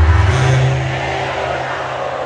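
Live band music through a stadium PA, carried by sustained low bass notes, with a large crowd's noise over it. Loudest in the first half second.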